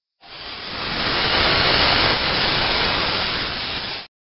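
A steady hiss of noise with no pitch to it, swelling in over the first second and cutting off abruptly at the end.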